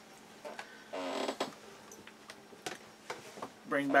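Quiet handling noise: a short breathy sound about a second in, then a few sharp, light clicks and taps as a cutting board is fetched and set down on the table.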